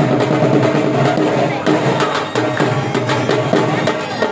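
Live Saraiki jhumar folk music: dhol drumming in a quick, dense rhythm under a steady, held melody line.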